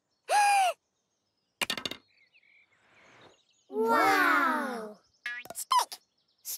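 Cartoon sound effects: a short pitched squeak, then a brief wooden clatter about a second and a half in as the stick insect drops flat to the ground. The loudest sound is a cluster of several falling tones about four seconds in, and a quick run of clicks with a short pitched blip comes near the end.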